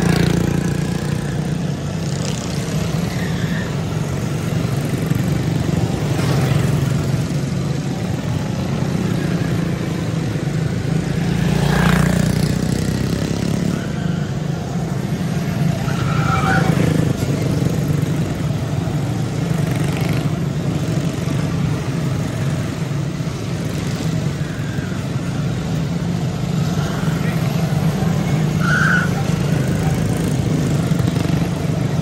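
A pack of Honda-powered quarter midget race cars running flat out around a small oval, their engines swelling and fading as cars pass close by, loudest about twelve seconds in.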